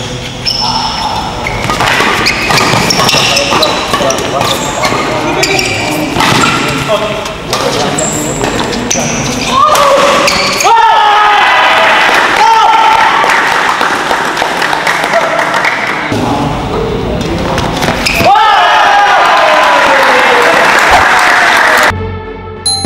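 Badminton rally on an indoor court: sharp racket hits on the shuttlecock and short squeaks of shoes on the court surface. From about halfway through, spectators shout and cheer loudly, and they break out again near the end as points are won.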